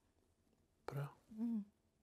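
Two short vocal sounds about a second in: a breathy exhale-like sound, then a brief hummed "mm" that rises and falls in pitch. Otherwise quiet.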